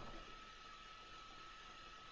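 Near silence: faint steady hiss of the recording line, with a thin steady high tone under it.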